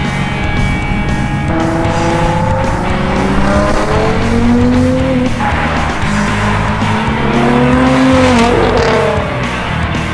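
Nissan GT-R R35's twin-turbo V6 accelerating hard, its pitch climbing and dropping back several times as it shifts up through the gears, with music playing along.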